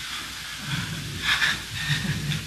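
A pause in a man's recorded talk, filled by the steady hiss of the recording, with faint low murmurs and a short soft noise about a second and a half in.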